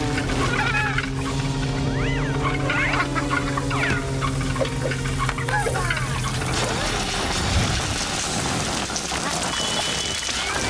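Cartoon background music with sustained notes, under the ants' short, high, sliding gibberish voices. From about six seconds in, a rushing whoosh of air takes over as the leaf glider flies off.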